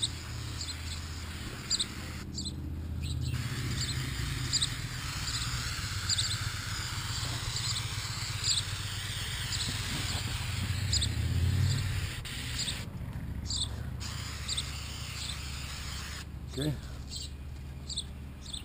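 Aerosol can of Tal-Strip aircraft paint remover hissing as it is sprayed in long bursts, with a couple of short pauses. Short, high chirps from a bird repeat about once a second over it.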